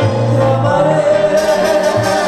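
A tierra caliente band playing live, with a singer holding one long note over the bass line.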